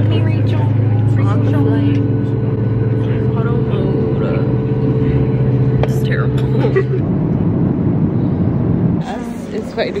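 Steady low drone of a jet airliner's engines heard inside the passenger cabin, with faint voices over it. The drone shifts about seven seconds in and stops about nine seconds in, giving way to quieter sound with voices.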